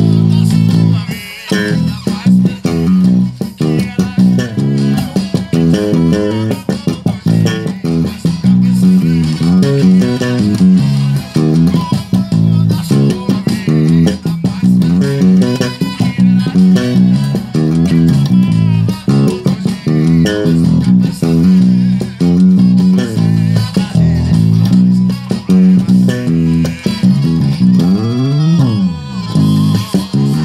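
Eight-string electric bass played through an amp, a continuous plucked forró groove. Near the end a note slides up and back down.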